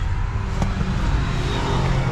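Minibus engine and road noise heard from inside the cabin while driving, a steady low rumble.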